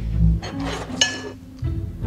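Background music with a low thump at the start. About a second in comes one ringing clink as a serving utensil strikes the ceramic plate while pasta is served onto it.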